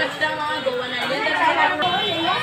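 Indistinct background talk: several voices overlapping, no words picked out.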